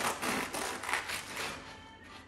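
A bread knife sawing through the crisp crust of a freshly baked baguette on a wooden board: a crunchy, rasping crackle with each stroke, fading toward the end.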